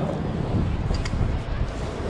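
Wind buffeting the microphone: a steady, rumbling rush of noise, with a faint click about a second in.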